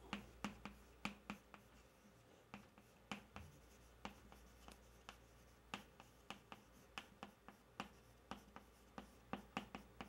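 Chalk writing on a chalkboard: faint, irregular taps and short scratches as strokes of characters are written.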